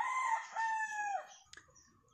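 A gamecock crowing, fairly faint: the long held end of its crow slides down in pitch and stops about a second in.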